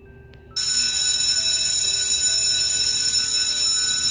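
School bell ringing steadily. It starts about half a second in and cuts off suddenly at the end, over faint background music.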